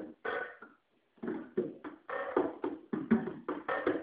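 Drum kit played solo: irregular drum strokes, each with a short ringing tone. A sparse opening and a brief pause give way, about a second in, to a denser run of strokes. The recording is thin, with no high treble, as from a phone recording.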